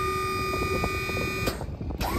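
Dump trailer's electric hydraulic pump running steadily under a heavy load while raising the bed, boosted by a jump starter because the trailer battery is dead. The whine cuts off about one and a half seconds in.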